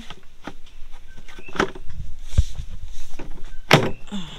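Black plastic toilet seat being fitted onto a bucket, with handling knocks and scrapes: a low thump about halfway through and a sharp clack near the end as it seats.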